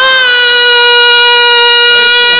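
A male naat reciter singing one long note, held steady at a single pitch.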